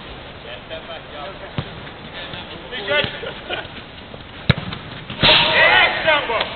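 A football being kicked, three sharp thuds about a second or more apart, with players shouting and calling out; a loud shout near the end is the loudest sound.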